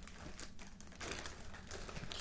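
Clear plastic zip-lock bag crinkling as its seal is worked open by hand, a quick run of small clicks and crackles that gets louder about halfway through.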